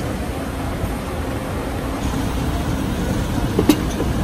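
Steady low rumbling background noise, with a single sharp knock near the end.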